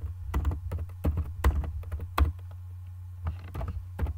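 Typing on a computer keyboard: quick runs of keystroke clicks for the first two seconds or so, then a few scattered keystrokes near the end, over a steady low hum.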